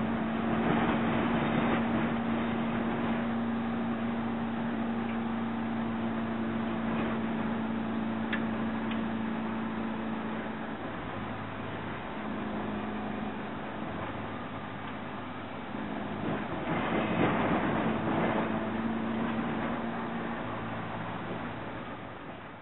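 1957 Volkswagen bus's air-cooled flat-four engine running steadily under way on a dirt road, heard from inside the cab along with road noise. Its steady hum drops out for a moment about halfway through, then comes back.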